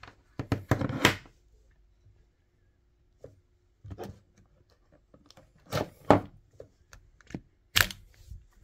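Irregular handling noises: short knocks, clicks and rustles of power cords being moved on a desk and the buttons of a plug-in energy meter being pressed, in several brief clusters with quiet gaps between.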